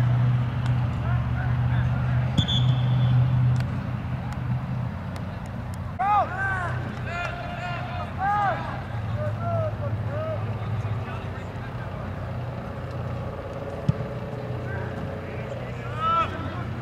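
Soccer players and onlookers shouting short calls across the field, several in a cluster in the middle, over a steady low engine-like hum. A single sharp knock a couple of seconds before the end.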